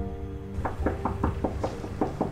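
Knocking on a door: a quick run of raps, about five a second, starting about half a second in, over sustained background music.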